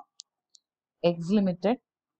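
Two faint, very short clicks close together, then a short spoken phrase about a second in.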